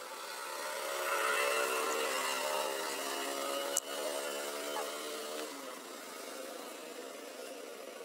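A motor vehicle engine running nearby with a steady hum, swelling over the first second and then fading, the hum cutting off about five and a half seconds in. A single sharp click comes a little before the middle.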